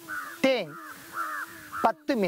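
A voice speaking in short, drawn-out syllables with pauses between them, over a faint steady low tone.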